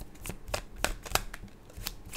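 A deck of tarot cards shuffled by hand, the cards slapping against each other in a handful of sharp, irregular clicks.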